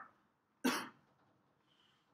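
A single short cough in a lecture hall, about two-thirds of a second in.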